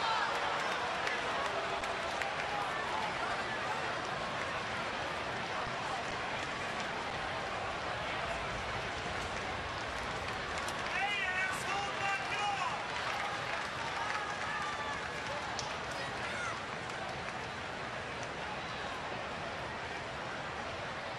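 Ballpark crowd noise: a steady din of many voices, with a few individual calls standing out about eleven to thirteen seconds in.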